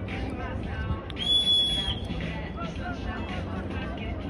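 One short, steady whistle blast about a second in, the loudest sound here, over the chatter of a crowd of spectators.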